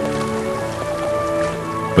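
Choppy water splashing against wooden pier pilings, a steady rushing hiss under soft background music of held chords.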